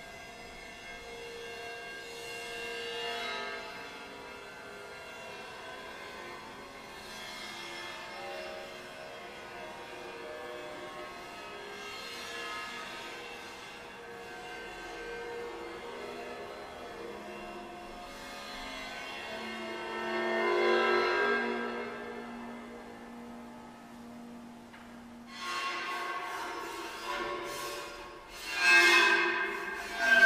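Crash cymbal bowed while being lowered into and lifted out of a tub of water. Its ringing overtones swell and fade and shift in pitch as the water changes its vibration. Louder swells come near the end.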